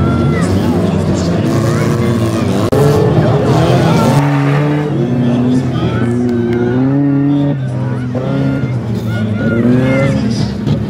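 Several crash-car engines revving hard, their pitch rising and falling, as the cars are driven around the track in reverse gear.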